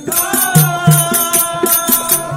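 Folk drama accompaniment: a barrel drum and small cymbals keep a steady beat of about four strokes a second under a held melody line.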